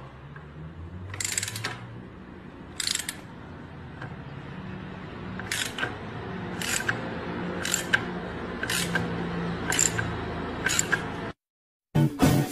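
Socket ratchet wrench clicking as it tightens a screw: eight short bursts of clicks, the first two a second and a half apart and the rest about a second apart, over a faint low sound. It cuts off abruptly shortly before the end.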